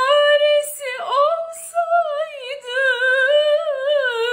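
A woman singing a Turkish song unaccompanied in a high register. She holds long notes with vibrato and breaks them with quick sliding ornaments, with brief dips in the voice about one and two and a half seconds in.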